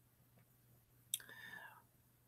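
Near silence with a faint steady low hum. About a second in comes a man's faint breath, starting with a small click.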